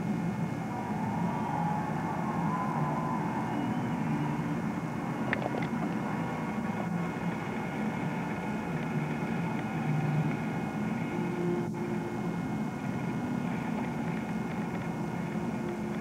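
Steady low rumble of distant city traffic heard from high above the street, with a faint click about five seconds in.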